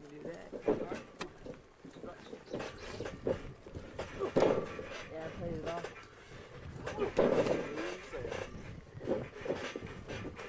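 Indistinct voices of people talking and calling out, loudest about halfway through and again later, with a few short knocks near the start.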